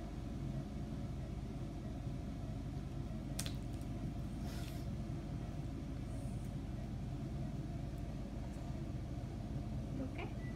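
Steady low hum and rumble of a small hospital room, with a single sharp click about three and a half seconds in and a brief rustle about a second later.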